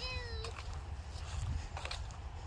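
A child's high-pitched voice calling out once in the first half-second, one drawn-out note that rises slightly and then falls, over a steady low wind rumble on the microphone.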